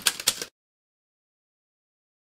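Typewriter sound effect: a few rapid key strikes that stop about half a second in, followed by complete silence.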